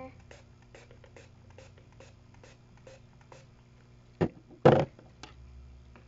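Purple plastic spray bottle being worked open by hand: faint small clicks about twice a second as the spray top is twisted, then two short, louder scrapes a little past four seconds in as the spray top comes off.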